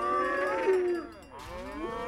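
Cow puppets mooing: overlapping drawn-out moos, one over the first second that sinks in pitch at its end, and another rising near the end.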